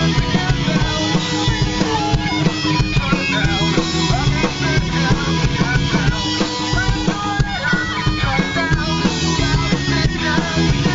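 Rock band playing live and loud: electric guitar, bass guitar and drum kit, with a steady drum beat.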